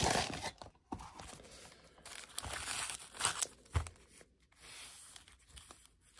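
Foil-wrapped trading-card packs crinkling and rustling as they are handled, in several short bursts.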